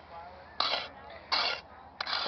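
Two short scrapes of a small shovel biting into dirt, about 0.6 and 1.3 seconds in, with faint voices between them.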